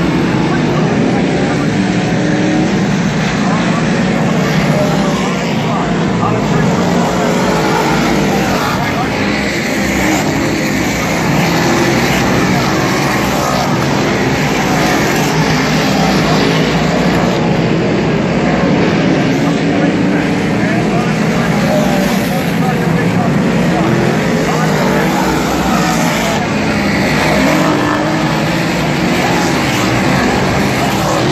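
Several 358 modified dirt-track race cars, small-block V8 engines, running hard as the pack laps the track. The engine note rises and falls continuously.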